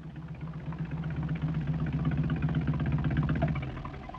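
Vintage open car's engine running as the car drives up to the curb: a low, rapidly pulsing engine note that grows louder, then drops away near the end as the car stops.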